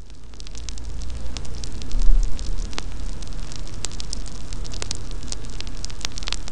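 Fire crackling and rushing with sharp pops, swelling up from nothing to a peak about two seconds in, then holding steady.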